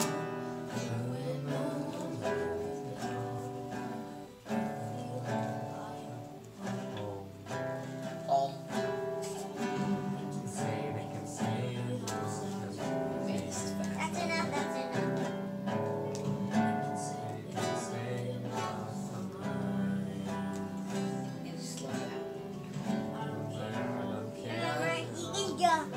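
Acoustic guitar played solo, a continuous flow of plucked notes and chords.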